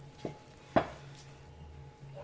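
A large butcher's knife chopping through goat meat onto a wooden chopping block: two strokes, a lighter one just after the start and a harder one under a second in.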